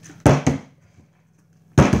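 A partly filled plastic juice bottle landing on a wooden table after being flipped: a sharp thud and a quick bounce about a quarter second in, then another loud thud near the end as it hits the table again and falls over.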